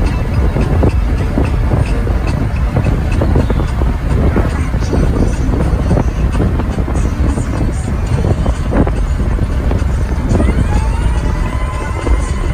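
Road and wind noise of a moving car, heard from inside, with music playing over it.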